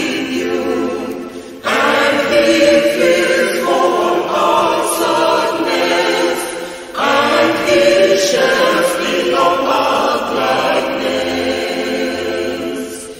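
Choir singing an English hymn in sustained phrases, with a fresh phrase starting sharply about two seconds in and again about seven seconds in.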